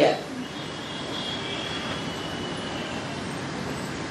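Steady rushing background noise with a faint high whine through the middle, engine-like, in a pause between spoken words.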